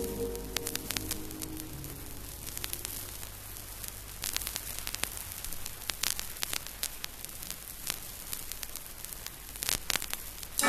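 Surface noise of a vinyl record in the quiet groove between two songs: crackle and scattered sharp clicks over a steady hiss and low mains hum. The last notes of the previous track die away in the first few seconds, and one louder click comes near the end.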